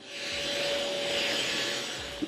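Stick vacuum cleaner running over a woven rug: a steady motor whine with a hiss of air, swelling up over the first half-second.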